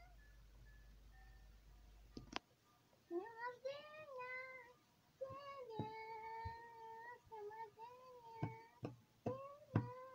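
Soundtrack of a music clip played back through a laptop speaker: a high-pitched voice holding long, gliding notes from about three seconds in, broken by sharp clicks. Before it, a faint low hum and a single click.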